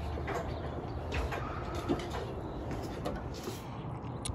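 A bird cooing faintly over a steady low rumble of outdoor background noise.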